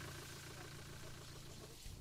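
Faint, steady low engine hum.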